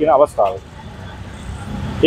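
Road traffic passing in the street: a low rumble that swells near the end, after a man's brief words.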